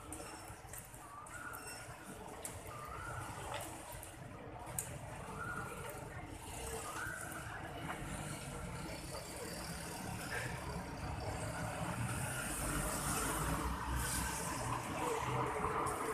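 Street ambience: steady road-traffic noise with faint voices in the background, the traffic growing louder over the second half, and one sharp click about five seconds in.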